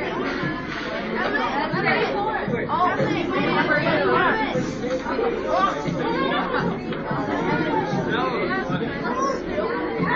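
Many young people talking at once: steady, overlapping chatter in a large room.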